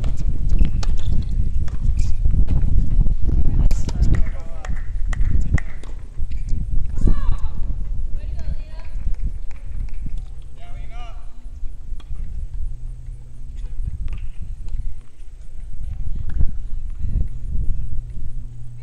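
Tennis ball strikes and bounces, a scattered series of sharp knocks, heaviest in the first six seconds, over a low rumble, with players' voices and shouts from the courts.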